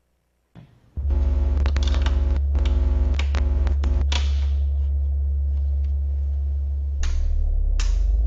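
A guitar amplifier's loud steady mains hum, starting about a second in, with buzzing crackles over the next few seconds as a cable is plugged into the jack of an electric guitar. A couple of sharp clicks near the end.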